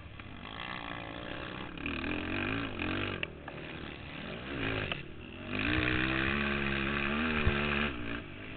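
Racing ATV's engine heard from on board, its revs rising and falling several times, then holding high and loud for the last two or three seconds before dropping off near the end.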